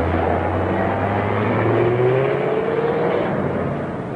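A car engine running, with a whine rising in pitch through the middle as it speeds up.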